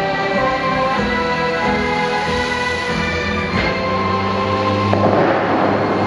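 Orchestral music played for the Bellagio fountain show, with a sharp boom a little past halfway as a water cannon fires. From about five seconds in comes the rush of a tall column of water shooting up and falling back.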